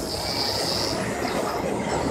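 City traffic noise, with a thin high squeal lasting about the first second.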